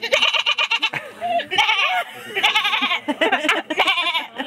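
A young woman laughing in several breathy, pulsing bursts of giggles.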